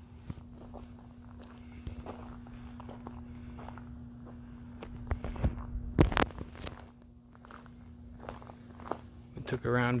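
Steady low hum of an electrical substation's power transformers, with footsteps and a few sharp knocks, loudest around five to six seconds in. A voice starts just before the end.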